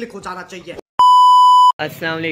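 A loud, steady electronic bleep of the standard censor-bleep kind, one unchanging note lasting about three quarters of a second. It starts about a second in and stops sharply, with a brief speech fragment just before it.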